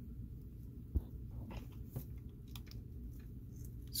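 Hands handling a small plastic action figure: faint rustles and small clicks, with one sharper click about a second in, over a steady low hum.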